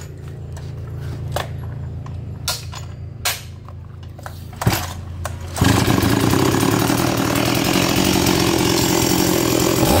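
Stihl 026 Magnum 49 cc two-stroke chainsaw idling with a few handling knocks, then throttled up sharply about five and a half seconds in and held at high revs to the end.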